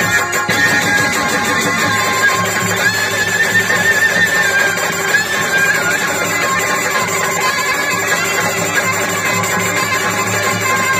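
Live stage folk music: a clarinet playing a wavering, ornamented melody over the band's steady accompaniment.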